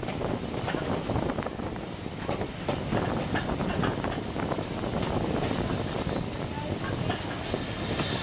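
A heritage train's passenger carriage running along the line, heard from its window: a steady rumble of wheels on rail with many quick clicks and rattles.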